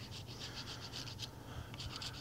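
Block of Parmesan cheese grated on a rasp grater: faint, quick, even scraping strokes, about six a second, with a short pause a little past the middle.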